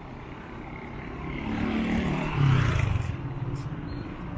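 A motor vehicle drives past close by on the road. Its engine and tyre noise swell to a peak about two and a half seconds in, then fade.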